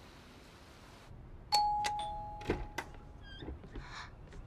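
Electronic doorbell chiming a two-note ding-dong, the second note lower, about a second and a half in, with a few sharp clicks and knocks around and after it.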